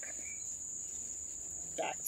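A steady, high-pitched chorus of crickets, with one word spoken just before the end.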